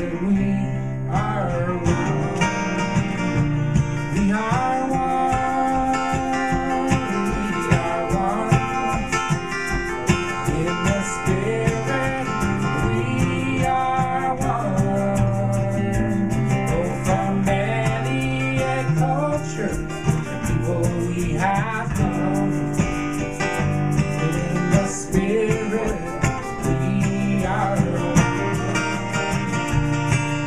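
Ovation acoustic guitar played as accompaniment to a man and a woman singing a folk song together.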